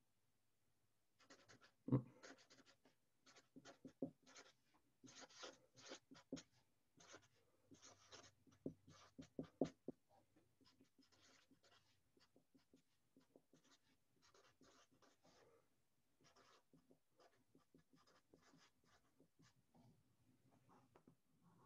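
Marker writing on a sheet of paper: faint, short scratchy strokes, with one sharper tap about two seconds in, growing quieter after about ten seconds.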